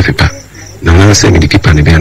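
A man's voice in drawn-out, fairly steady tones: a brief sound at the start, a pause, then a longer stretch from about the middle on.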